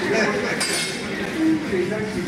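Several people talking in a busy room, with a short crisp noise about half a second in.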